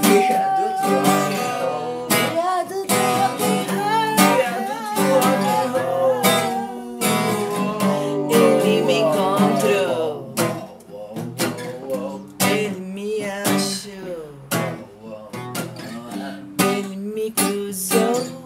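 Acoustic guitar music: strummed chords with a wavering melody line over them, thinning out and getting quieter after about ten seconds.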